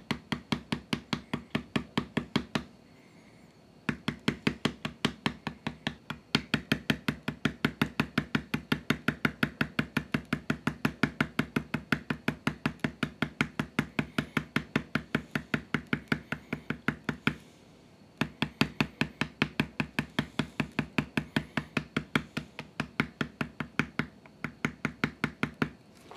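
Rapid, even mallet taps on a leather backgrounding stamp, about five strikes a second, texturing the background around the tooled design of vegetable-tanned leather. The tapping stops twice for about a second, a few seconds in and again about two-thirds of the way through.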